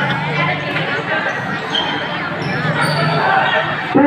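Spectators' voices talking and calling out around a basketball court, with a basketball bouncing on the court floor.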